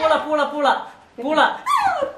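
A person's voice making short, wordless yelping cries that rise and fall in pitch, in two runs with a brief pause about a second in.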